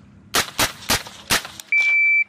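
Four single rifle shots fired in quick succession, a quarter to half a second apart, followed near the end by a steady high electronic beep of about half a second, like a range timer's tone.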